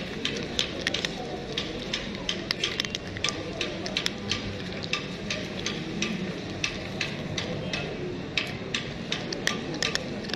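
A cat crunching dry kibble close up: an irregular run of sharp crunches, several a second, over a low background of street noise.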